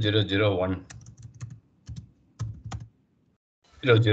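Computer keyboard keystrokes, a handful of short, sharp taps over about two seconds as digits are typed into a spreadsheet cell, between bits of speech at the start and near the end.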